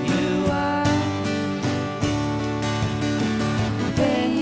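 Live acoustic worship music: acoustic guitar and ukulele strumming a steady rhythm.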